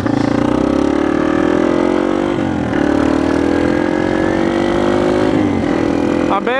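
Motorcycle engine accelerating up through the gears, its pitch climbing steadily in each gear and dropping at upshifts about two and a half and five and a half seconds in.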